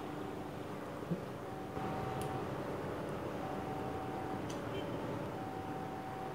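Distant CC 206 diesel-electric locomotive approaching slowly with its train, heard as a faint, steady engine rumble with a thin held tone that comes and goes about every two seconds.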